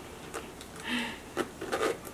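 A small handbag being handled, its leather rubbing, with a short scrape about a second in and a few light clicks from its metal hardware and chain strap.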